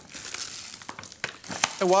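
Toasted seeded burger buns being pulled apart and handled on a plate: a dry crackly rustle with a few light clicks, then a voice starts near the end.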